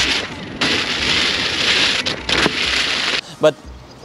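Veteran Patton electric unicycle's tyre hissing and spraying through wet, puddled pavement, with a brief dip about half a second in and stopping a little over three seconds in. The wheel rides over the bumps without its suspension bottoming out.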